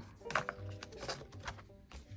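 Faint background music with a few light clicks and paper rustles from a paper cash envelope being handled and slipped into a clear plastic box.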